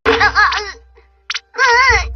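A cartoon character laughing in a quick run of short bursts, then a wavering voice near the end, over background music.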